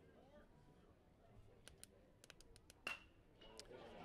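Near silence with a few faint ticks, then, about three seconds in, a single sharp metallic ping: a metal baseball bat hitting a pitched ball.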